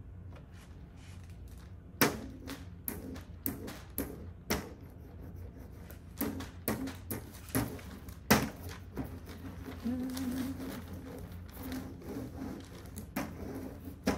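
Rice paper being handled and pressed onto window glass with a rubber brayer: irregular light clicks, taps and rustles as the roller works over the paper.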